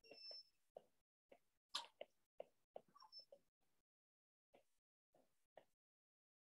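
Near silence broken by faint, irregular taps of a stylus on a tablet during handwriting, about a dozen spread through the first half and two more near the end.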